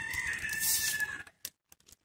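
A single long bird call, about a second and a half, holding one slightly falling pitch, ends a little past the middle. A few faint clicks of hands handling the mushroom stalks follow.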